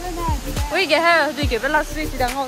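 Music with a singing voice and a beat: a melodic sung line with short low drum hits under it.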